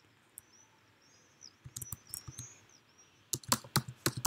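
Typing on a computer keyboard: a few scattered keystrokes from about a second and a half in, then a quick run of louder keystrokes near the end.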